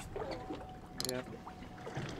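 Low ambience aboard a boat offshore: a steady low rumble of wind and water with a faint steady hum through the middle.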